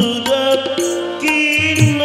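Bengali devotional bhajan sung live: a male lead voice holds and bends long notes into a microphone over sustained keyboard chords. Regular percussion strokes keep time beneath.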